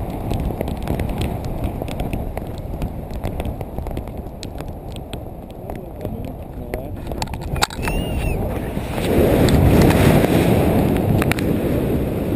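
Wind buffeting a camera microphone in paraglider flight: a steady low rumble that grows louder about nine seconds in. A sharp knock comes a little before that.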